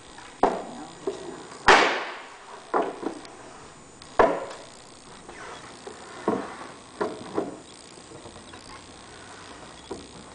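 Wooden segments and leaves of an expanding circular dining table knocking and clunking as they are handled and slid closed. There are about ten irregular knocks, the loudest about two seconds in, and only faint ticks after about seven and a half seconds.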